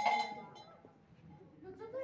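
A struck metal object, like a small bell, ringing out and dying away over the first half second, followed by a brief voice near the end.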